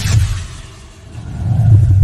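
Logo-sting sound effect for a lightning strike: a sharp crack at the start, then a low rumble that fades and swells again near the end.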